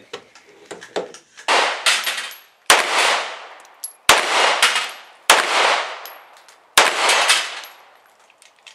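Five pistol shots from a Jericho 941 fired at a steady pace, roughly one every second and a half, each trailing off in a long echo.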